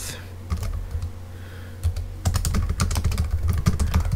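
Typing on a computer keyboard: a few scattered key clicks, then a quick run of keystrokes from about halfway in.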